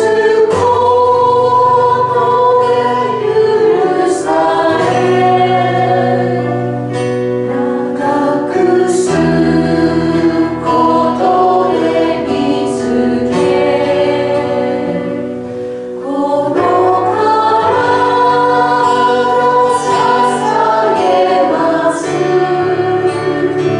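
A group of voices singing a slow worship song over instrumental accompaniment with sustained bass notes. The music eases briefly about two-thirds of the way through, then swells again.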